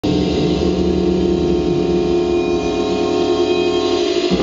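Loud live noise-rock music: a dense drone of sustained guitar and electronic tones over a rough, rumbling low end, with no break.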